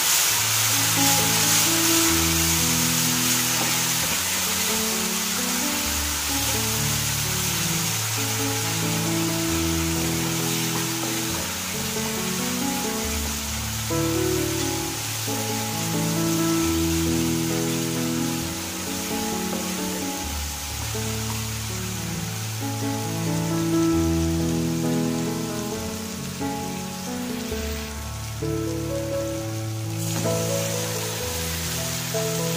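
Onion-tomato masala sizzling in hot oil in a pan as it is stirred, with a steady hiss that thins out near the end. Background music of slow, long-held notes plays throughout.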